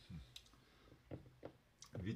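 Near silence with a few faint, sharp clicks spread through the two seconds.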